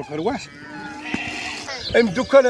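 A sheep bleating once in a long, steady call of about a second.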